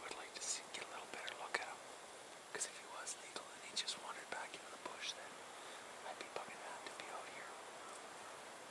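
A person whispering in short, breathy phrases with hissy consonants.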